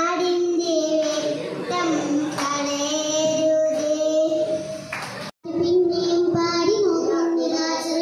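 A young girl singing solo into a microphone, holding long, steady notes. About five seconds in, the sound cuts out for a moment and another girl's solo singing begins.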